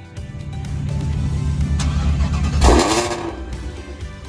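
Mid-engine C8 Corvette's V8 being revved: the engine note builds for a couple of seconds, peaks in a loud burst and drops back. Background music plays throughout.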